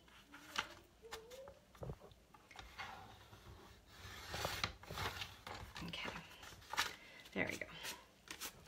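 Scissors snipping through paper card in a series of short, quiet cuts, straightening a crooked edge.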